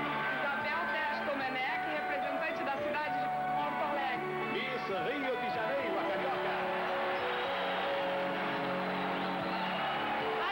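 Background music playing steadily, with indistinct voices mixed in, mostly around the middle.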